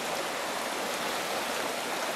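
Shallow rocky mountain stream running over stones, a steady, even rush of water.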